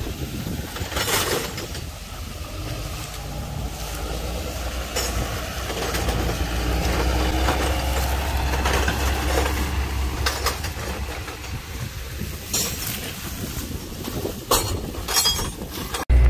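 Tractor engine running as it pulls a grain cart past, its low rumble loudest around the middle and easing off after, with a few clinks and knocks.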